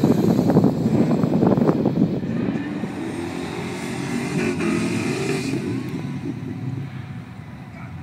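Car engine revving hard as a car is driven across grass, loud and pulsing for the first couple of seconds, then easing to a quieter, wavering engine note.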